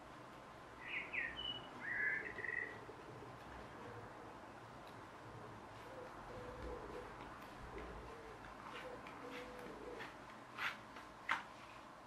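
A garden bird gives a few short, high chirps about a second in, then a pigeon coos faintly in a low, repeated phrase for several seconds. Two sharp clicks come near the end.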